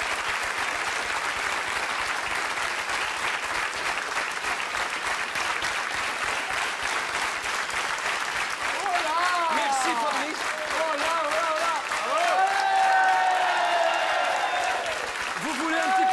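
Studio audience applauding steadily, with voices calling out over the clapping from about halfway through.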